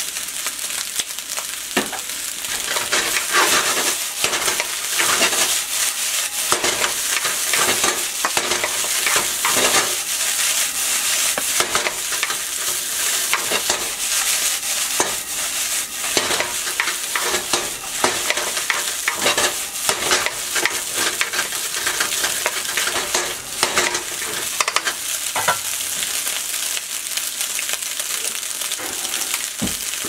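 Fried rice sizzling in a nonstick wok while a wooden spatula stirs and tosses it: a steady hiss of frying broken by many quick scrapes and knocks of the spatula against the pan.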